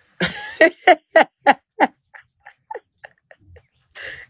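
A woman laughing: a quick run of about six "ha" pulses in the first two seconds, trailing off into faint breathy bits.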